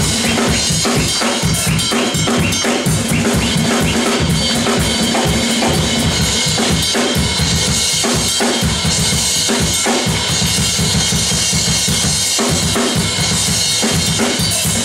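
Drum kit played live and busily: fast bass drum and snare strokes under a steady wash of struck cymbals.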